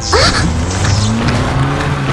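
Car sound effect: a short tyre screech right at the start, then an engine running with slowly rising pitch as the vehicle drives in.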